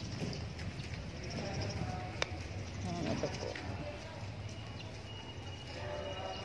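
Faint, indistinct voices over a steady low outdoor rumble, with a single sharp click about two seconds in.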